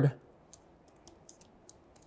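Laptop keyboard being typed on: a handful of faint, separate keystroke clicks, a few a second.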